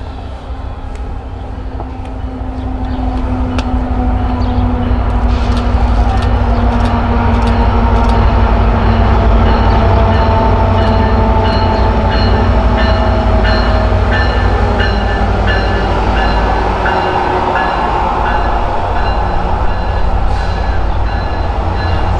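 An Amtrak F59PHI diesel locomotive and its passenger cars approach and pass at track speed: the engine and the wheels on the rails make a deep rumble. It grows louder over the first few seconds and stays loud as the cars go by, with scattered clicks from the rails.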